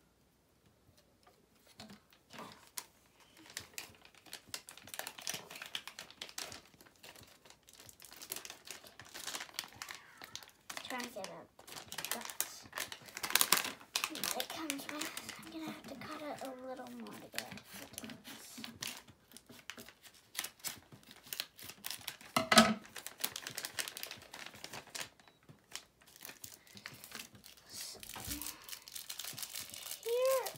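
Plastic packaging of a LEGO DOTS bracelet crinkling and tearing as it is handled and opened by hand, in many quick, irregular rustles, with one louder sharp sound about two-thirds of the way through.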